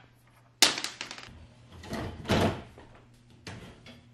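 Wooden dresser drawers being handled: a sharp wooden knock about half a second in, then a drawer sliding on its wooden runners for under a second, about two seconds in.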